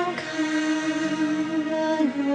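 A woman singing into a microphone. She holds one long note with a slight vibrato over a steady low accompaniment note.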